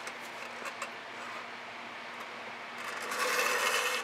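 Faint scraping of a tool dragged through wet acrylic paint on canvas, with a few small ticks. About three seconds in comes a louder rubbing scrape lasting about a second, as the board under the canvas is turned on the worktable.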